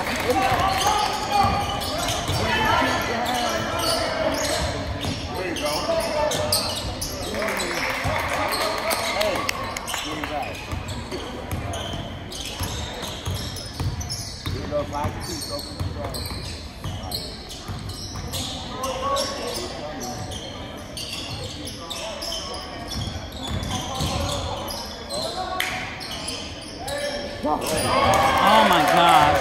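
A basketball bouncing on a hardwood gym floor as players dribble up the court, with spectators talking in the background.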